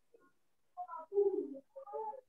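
A bird cooing faintly in three short, low notes, starting about three-quarters of a second in.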